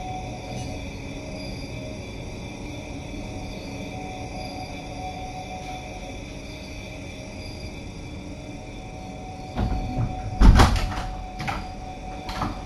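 Steady low background hum, then near the end a few loud knocks and a clatter as a door opens.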